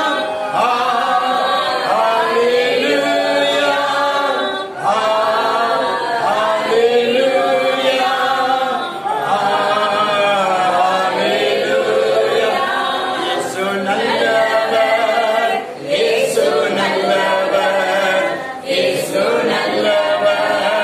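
Christian worship song sung without instruments, led by a man's voice. It runs on in long phrases, with short breaks between lines about every four to five seconds.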